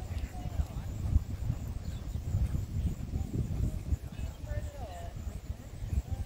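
Racehorses galloping in a breeze on a dirt training track: a low, irregular thudding of hoofbeats.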